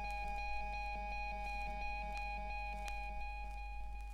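Music played from a vinyl record: a held, ringing chord with a faint quickly repeating note, cutting off near the end as the track ends. A steady low hum and occasional surface clicks run underneath.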